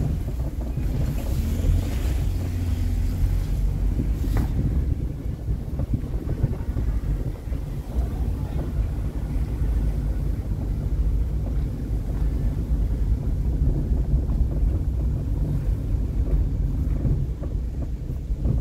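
Wind buffeting the microphone: a steady, gusting low rumble, with a couple of brief rustles in the first few seconds.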